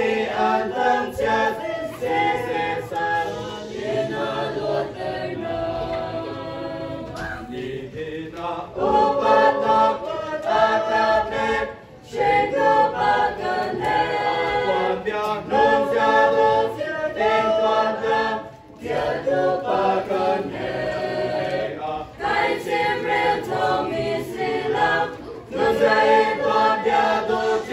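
A mixed youth choir singing a hymn together, in phrases with short pauses about twelve and eighteen seconds in.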